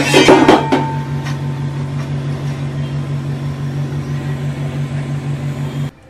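A wire spider strainer clinks and scrapes against a clay frying pot as fried masala peanuts are lifted from the oil, loudest in the first second. A steady hum with a faint hiss follows and cuts off suddenly just before the end.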